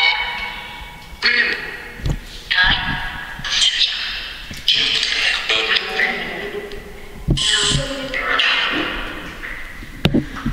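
Spirit-box app played through a small portable speaker: choppy fragments of voice-like sound and static that cut in and out every half second to a second.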